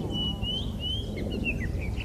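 Eurasian blackbird singing: a run of clear whistled notes, with rising slurs midway and falling notes after, over a steady low rumble.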